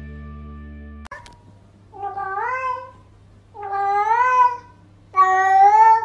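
A cat meowing three times: long, drawn-out meows that rise in pitch and then hold, each louder than the one before.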